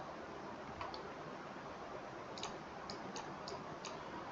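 Faint clicks of a computer mouse, about six of them and mostly in the second half, as lines are placed on a charting screen, over low room hiss.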